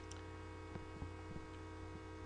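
Steady electrical mains hum with many steady overtones, carried on the microphone recording, with a few faint clicks near the middle.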